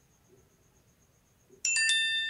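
Near silence, then about three-quarters of the way in, a sudden electronic chime: several clear tones at different pitches start one right after another and keep ringing.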